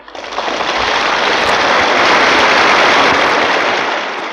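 Audience applauding on a live concert recording played from a vinyl LP. The clapping swells quickly and then fades out slowly.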